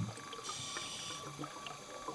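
Underwater ambience: a steady hiss with scattered small pops, like bubbles, and a brief low rumble at the start.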